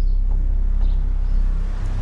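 Car engine idling: a steady low rumble.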